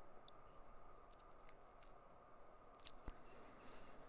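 Faint snips of kitchen scissors cutting cooked bacon into pieces, a few soft clicks with a sharper cluster about three seconds in.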